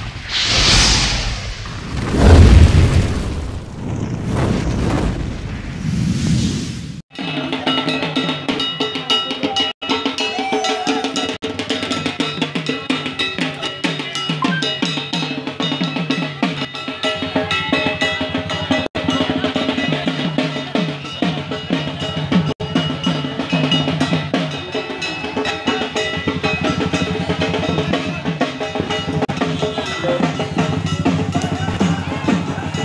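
Whooshing intro sound effects with a loud boom about two seconds in, then an abrupt cut at about seven seconds to continuous, fast drumming with steady ringing metallic tones over it.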